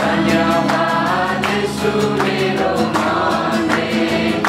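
A group singing a Christian worship song together to acoustic guitar strumming, with hands clapping along in time.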